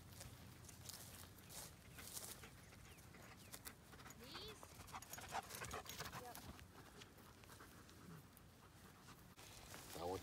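Near silence in an open field: faint background with a few scattered faint clicks and brief faint sounds.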